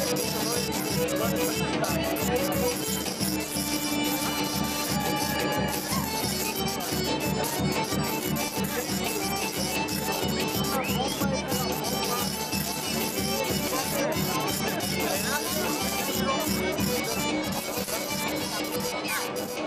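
Serbian folk dance music with a quick, even beat, playing steadily.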